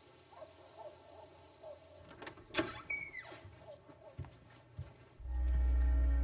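Quiet outdoor night ambience: a steady high insect drone and faint short chirps, with a click and a brief falling squeak about halfway through. Low sustained music comes in about five seconds in.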